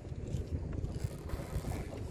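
Wind rumbling unevenly on the microphone over open water, with faint light rustles and drips as a wet nylon gill net is pulled by hand into the boat.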